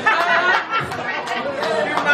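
Several voices talking and chattering over one another.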